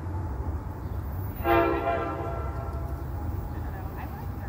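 Train horn giving one short blast, a chord of several notes, about a second and a half in, fading away over about a second, over a steady low rumble.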